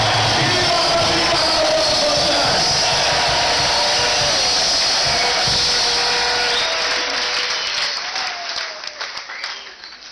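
A large crowd of worshippers loudly shouting, cheering and clapping in praise, with music mixed in; the noise dies away over the last few seconds.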